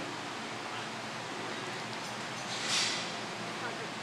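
Steady gym room hiss with faint background voices, and one short breathy hiss about three-quarters of the way through.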